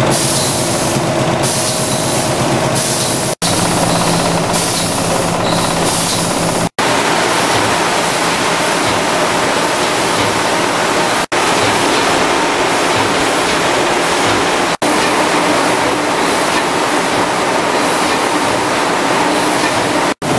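Food-processing machinery running: a loud, steady rush of air and machine hum from a dicing machine and IQF tunnel freezer line. The noise is broken by a few very short dropouts, and at the start a steady hum with clear tones sits under the rush.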